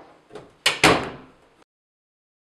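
Knocking on a wooden door: a quick run of four knocks in under a second, the last two the loudest, each ringing out briefly.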